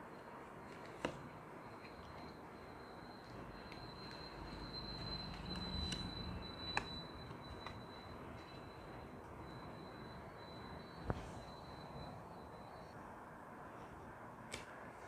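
Faint room tone with three soft taps as cards are set down on a cloth-covered table, about a second in, near the middle and about eleven seconds in. A faint steady high-pitched whine runs under it until near the end.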